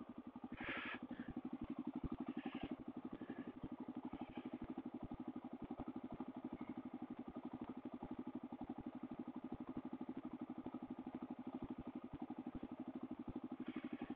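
Suzuki DR-Z400's single-cylinder four-stroke engine idling steadily at a standstill, a quiet, even run of quick pulses.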